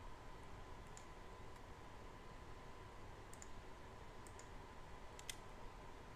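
Faint computer mouse clicks, a few scattered ones with some in quick pairs, the loudest near the end, over a faint steady background tone.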